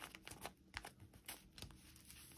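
Faint rustling and light clicks of paper being handled: hands pressing a glued envelope page flat and picking at a small scrap of paper.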